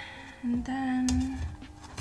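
A woman's voice holding one steady note for about a second, a wordless hum or drawn-out sound, with faint taps from handling.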